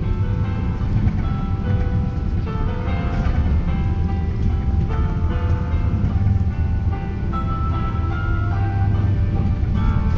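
A melody of chime-like electronic notes playing over a high-speed train's public-address system, over the steady low rumble of the train running.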